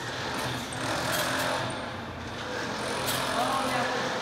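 A bungee trampoline in use: the mat thumps twice, about two seconds apart, as the jumper lands and rebounds. Under it runs a steady low hum with echoing hall noise, and a voice is heard briefly near the end.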